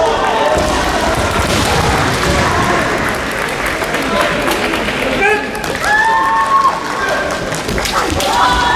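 Kendo arena din: fencers' kiai shouts from several courts, some held as long cries, over sharp clacks of bamboo shinai strikes and thuds of stamping footwork on the wooden floor.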